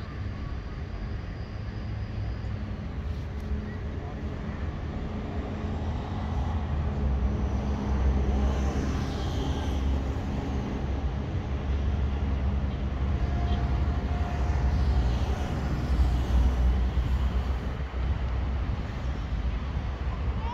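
Outdoor ambience beside a football pitch: a steady low rumble that grows louder about seven seconds in, with faint distant voices from the players.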